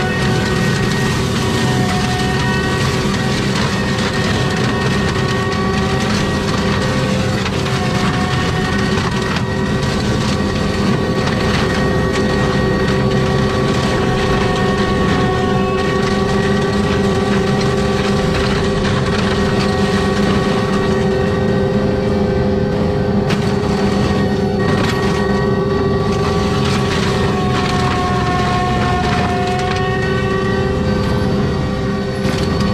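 ASV RT-120F compact track loader with a Prinoth M450s forestry mulcher head running under load: a steady engine and rotor drone with a whine, and constant crackling and splintering as brush and saplings are chewed into chips.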